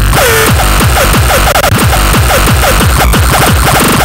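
Loud, distorted 90s-style tekno/gabber electronic music: kick drums pounding in a fast steady beat under short chirping synth notes, with a falling synth glide near the start.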